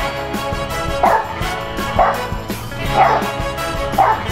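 A boxer dog barking about once a second, four short barks, over background music.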